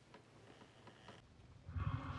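Quiet with a few faint ticks, then near the end a sudden loud, low, rough ape vocalisation: the orangutan Maurice grunting.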